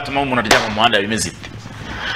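Speech only: a man talking in a studio, with a short lull in the second half.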